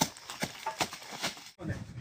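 Footsteps crunching on dry leaves and stony ground, a handful of irregular steps, breaking off abruptly about one and a half seconds in.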